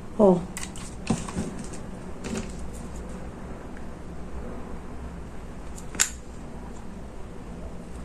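A few light clicks and taps from handling a hot glue gun and a wooden stick over a cutting mat, with one sharper click about six seconds in, over a low steady hum.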